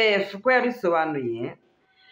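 A woman's voice speaking expressively in short phrases, the last one drawn out and falling in pitch, then stopping about one and a half seconds in.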